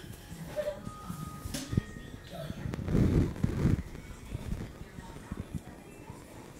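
Irregular thumps and knocks of a child jumping and landing on the floor, with a denser, louder stretch of thudding about three seconds in, among faint voices.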